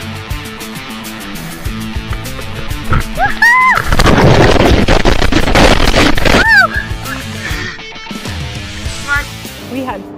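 Background music throughout, with children's shouts and squeals. Loud rushing, splashing river water swamps everything from about four to six and a half seconds in.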